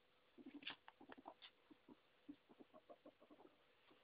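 Young ferret dooking: a run of soft, quick clucking chuckles, faint, starting about half a second in and going on for about three seconds.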